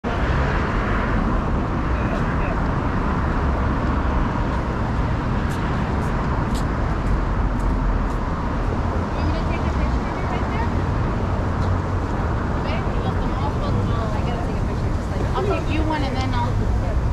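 Steady street traffic noise with a heavy low rumble from a busy roadway. Faint voices of passers-by come in near the end.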